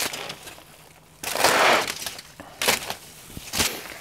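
Aluminium foil crinkling and crackling as it is pulled open and crumpled by hand. A loud burst of rustle comes about a second in, followed by scattered sharp crackles.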